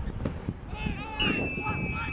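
Players and spectators shouting and calling out on the football pitch. About a second in, a steady, shrill referee's whistle sounds for about a second, just after a tackle has brought a player down.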